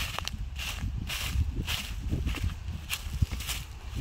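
Footsteps on a grassy path strewn with dry leaves, about two to three steps a second with one sharper step about three seconds in, over a steady low rumble.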